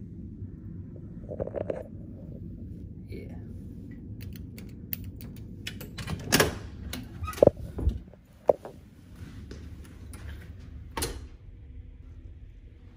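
A Bewator door-entry keypad beeps as a code is punched in. Several seconds later comes a quick run of sharp clicks and clunks from a door lock and door being worked, with one more knock near the end. A steady low hum runs under it all.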